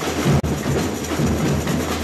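Samba percussion band playing a steady groove of drums and hand percussion, with a heavy low drum beat underneath. The sound drops out for an instant about half a second in.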